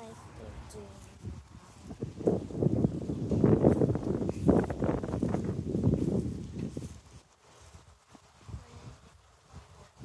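Close rustling and crackling at the microphone, of the kind a phone makes when handled while its holder walks; it builds after a second or so, is loudest in the middle and dies away about seven seconds in.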